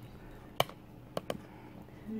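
Three short, light clicks against quiet room tone: one just after half a second in, then two in quick succession just after a second in.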